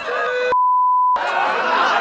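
Censor bleep: a single steady beep, a little over half a second long, that blanks out a spoken profanity, with a held shout just before it and laughing voices after it.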